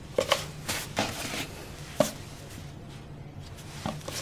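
Hands handling bread dough on a floured wooden worktop and a kitchen scale: a few short knocks and scuffs in the first second as a dough piece is lifted and set down, then one sharp knock about two seconds in.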